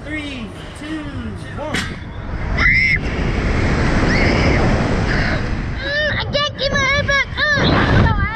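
Wind rushing loudly over the onboard microphone as a Slingshot reverse-bungee ride launches its two riders upward, starting about three seconds in. A short high shriek comes at the launch, and the riders scream repeatedly over the last two seconds.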